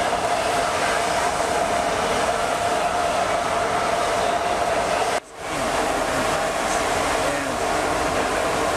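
A loud, steady mechanical whir with a constant humming tone. It breaks off for a moment about five seconds in, then carries on unchanged.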